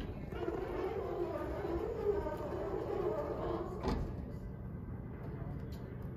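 Otis elevator's sliding doors running along their track with a wavering hum from the door operator. The run ends in a single knock about four seconds in as the doors reach their stop.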